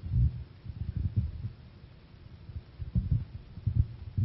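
A few dull, low thumps and rumbles at uneven intervals, with nothing higher-pitched over them.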